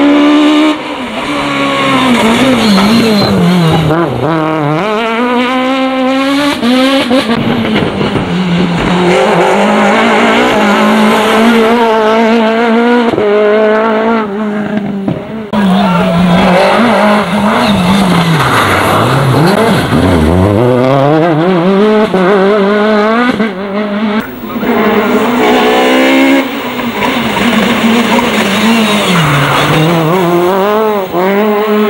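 Peugeot 306 Maxi kit car's naturally aspirated four-cylinder engine at full throttle, revving high through the gears over several passes. The pitch climbs, drops at each gear change and falls away hard as the driver lifts and brakes, then climbs again.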